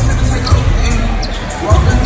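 Basketballs bouncing on a hardwood gym court, a few low thumps standing out over people talking and music in a large hall.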